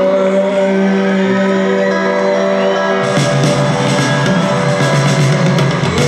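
Live band music in an arena, recorded from the audience: a held chord for the first half, then the band comes back in with strummed acoustic guitar and drums.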